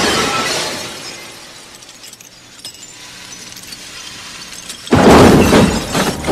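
Window glass shattering as a body crashes out through it, the crash dying away over the first second or so. About five seconds in there is a second loud crash as the body lands on a car roof and the car's windows shatter.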